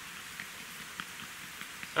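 Steady outdoor background hiss, with a couple of faint ticks as the wooden bow drill parts are handled.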